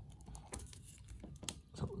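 Faint, scattered clicks and taps of small plastic toy parts being handled: a plastic accessory ring and its little joint pegs worked in the fingers.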